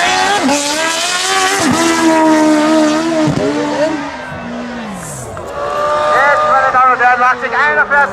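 Sport motorcycle accelerating hard from the start, its engine note climbing and dropping sharply at three quick upshifts, then falling away as it goes off down the track. From about six seconds in, another motorcycle revs in short rising bursts while spinning its rear tyre in a burnout.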